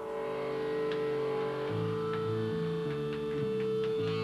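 Live rock band opening a song: one high note held steady throughout, a bass line stepping through notes from about two seconds in, and a few scattered picked notes above.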